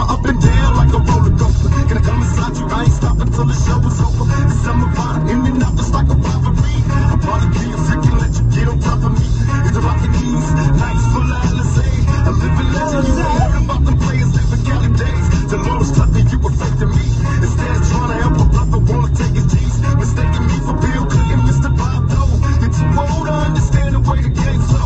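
Hip hop music playing on a car stereo, with a heavy bass line.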